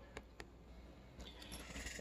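Faint handling noise: two light clicks close together, then rustling that grows louder near the end.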